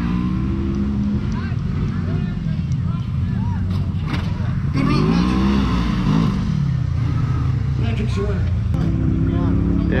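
Side-by-side UTV engines idling close by, with one engine revving up and settling back down about five seconds in.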